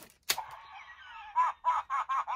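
Thinkway Toys pull-string talking Woody doll: the cord is pulled and released with a click, then the doll's small built-in speaker plays a thin, tinny recorded voice line, starting about a second and a half in and running on past the end.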